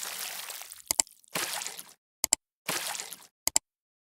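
Sound effects for a subscribe-button animation: three short whooshes, each followed by a quick double mouse-click.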